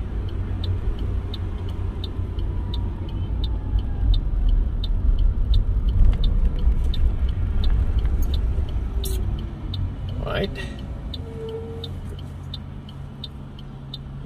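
Car cabin sound while driving: a steady low engine and road rumble that eases off about ten seconds in as the car slows toward the lights. Over it the turn signal relay clicks evenly about twice a second, signalling a move to the left.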